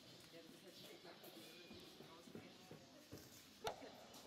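Near silence with faint, distant background voices, and one sharp knock near the end.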